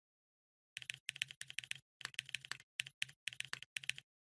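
Computer keyboard typing sound effect: rapid keystrokes in short runs with brief gaps, starting about a second in.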